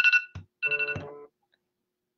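A phone's electronic ringtone trilling in short bursts, with a soft knock between them, cutting off just over a second in.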